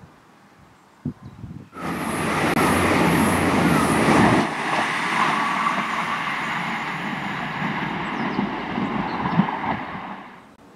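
Irish Rail diesel multiple-unit train running through the station: a loud rush of engine and wheel-on-rail noise comes in suddenly about two seconds in and is heaviest for the next two seconds, then settles to a steady rumble that fades at the end.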